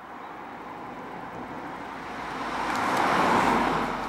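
Hyundai i20 Coupé (1.0 T-GDI, 120 hp) driving past: engine and tyre noise building as it approaches, loudest about three and a half seconds in as it goes by, then starting to fade.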